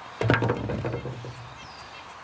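Cracked green husk of a ripe English walnut being split and pulled off the nut by hand: a short crackling and rubbing starting about a quarter second in and lasting about a second. The husk is already splitting on its own, the sign that the nut is ripe.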